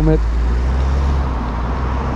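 Wind buffeting the microphone of a rider on a moving bike: a steady, loud low rumble with a rushing hiss over it.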